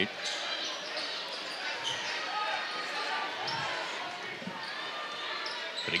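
A basketball being dribbled on a hardwood gym floor, with a steady murmur of crowd noise filling the gym.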